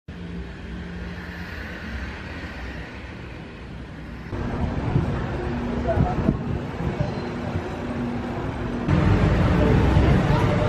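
City street ambience with motor traffic: engines running and road noise, with a background murmur of voices. It changes abruptly twice, getting louder each time.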